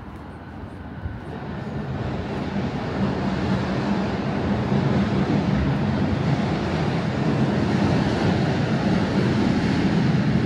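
Rumble of a passing heavy vehicle with a steady low engine hum. It swells over the first few seconds and then stays loud.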